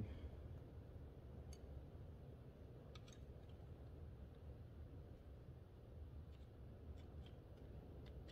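Near silence with a low steady hum, broken by a few faint, small metal clicks as a screwdriver pries at a spring-loaded regulator shaft part: one about a second and a half in, another about three seconds in, and a small cluster near the end.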